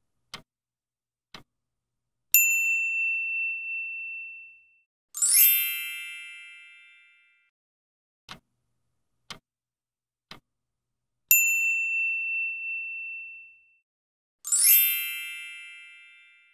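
Quiz-timer sound effects: stopwatch ticks once a second, then a single bright ding that rings for about two seconds, then a sparkling chime that sweeps upward and rings out. The cycle runs twice: two ticks, ding, chime, then three ticks, ding, chime.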